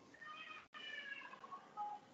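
Faint cat meow: one drawn-out call that falls slightly in pitch.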